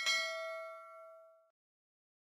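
Notification-bell 'ding' sound effect of a subscribe animation: one bright, bell-like struck tone that rings and fades away over about a second and a half.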